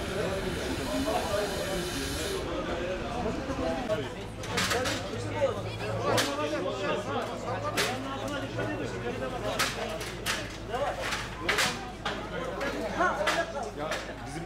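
A steady hiss for the first two and a half seconds that cuts off abruptly. Then indistinct voices over a low hum, with several sharp knocks at uneven intervals.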